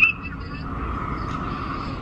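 Steady background rumble and hiss of an airport terminal's waiting area, with no distinct event. A faint steady tone fades out about half a second in.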